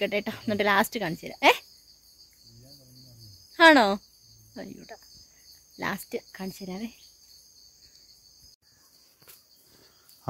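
A steady, high-pitched insect drone from the forest undergrowth, holding two constant tones throughout, heard between short bursts of a woman's speech.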